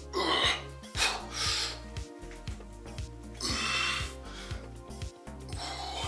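Background music with a steady beat, with a man's hard breathing from exertion over it: about four forceful breaths, a second or two apart, during a set of dumbbell raises.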